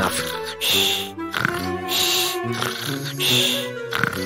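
Cartoon snoring sound effect: a snort-like snore in and a hissing breath out, repeating about every second and a quarter, over background music.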